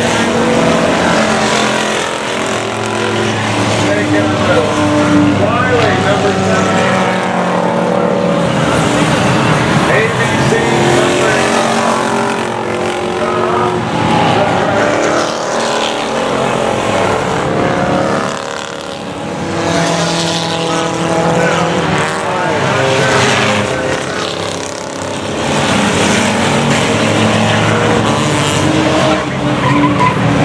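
A pack of enduro race cars running laps together on a short oval, many engines revving and running at once with pitches rising and falling as cars pass, loud throughout and easing briefly twice in the second half.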